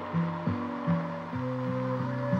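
Background music: low held notes stepping from one pitch to the next about every half second.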